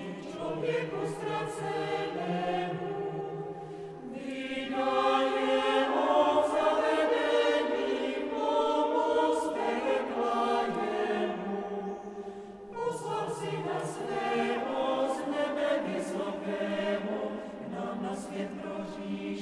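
Mixed choir of men's and women's voices singing late-medieval vocal music a cappella in a church, several voices sounding together. It swells in the middle, thins briefly about twelve seconds in, then comes back in.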